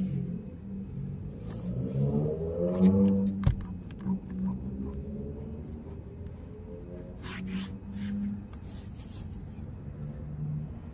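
A motor vehicle engine revving up, its pitch rising for about a second and a half, with a sharp knock about three and a half seconds in. Scattered rubbing and scraping later on, from a cloth wiping the car's interior door trim.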